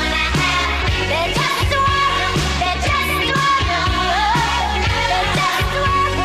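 Pop song playing: a singing voice carries a melody over a steady drum beat and bass.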